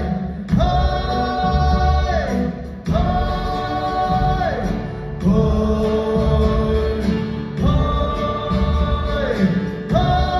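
Voices singing a chant in unison over a backing track with a steady beat: four long held phrases, each ending with a falling slide in pitch.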